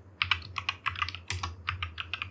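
Computer keyboard typing: a rapid, uneven run of keystroke clicks as a line of code is typed.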